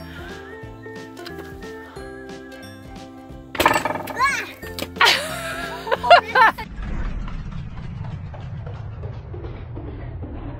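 A watermelon squeezed by hundreds of rubber bands bursts open over background music about three and a half seconds in, with high shrieks over the burst. From about six and a half seconds on, a low, steady rumble.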